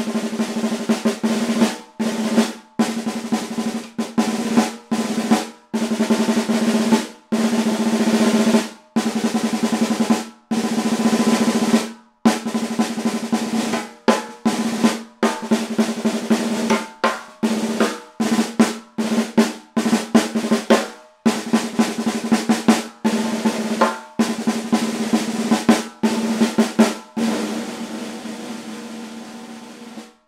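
Shallow 4.5 x 14 solid-maple Craviotto snare drums played with sticks: rolls and accented strokes in short phrases broken by brief pauses, over a steady ringing drum tone. One drum is tuned tighter than the other. The last roll fades away near the end.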